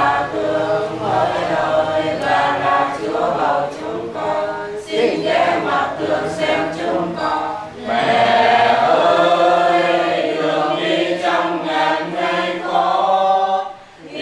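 A small group of men and women singing a hymn together, unaccompanied. The singing grows louder from about eight seconds in.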